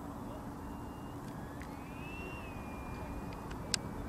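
Electric ducted fan of a Freewing F-4D Phantom RC jet running at low taxi throttle: a thin whine that rises and then falls in pitch over a steady low noise. A sharp click comes near the end.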